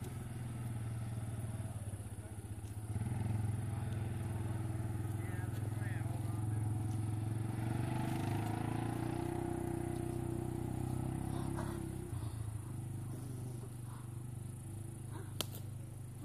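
ATV (quad) engine running as the four-wheeler drives along a dirt track. It gets louder about three seconds in and drops off after about twelve seconds as it moves away.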